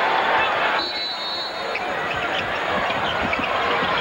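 Arena crowd noise at a college basketball game, with a basketball bouncing on the hardwood court and short low thuds through the rest. The crowd's din drops sharply about a second in.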